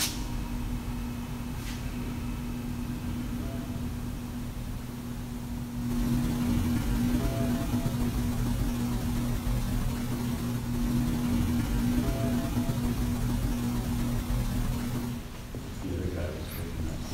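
A steady low hum under a hiss of room noise. The noise grows louder about six seconds in, and a few faint short tones come and go.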